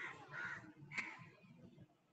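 A crow cawing: about three harsh calls in the first second, then fading.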